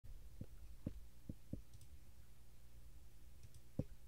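Soft, faint clicks and taps of a computer mouse and desk as the recording is started and a browser page opened: about five short knocks, the last and sharpest near the end, over a low steady hum.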